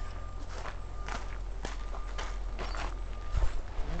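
Footsteps on a gravel path, roughly two steps a second, over a steady low rumble, with a heavy low thump near the end.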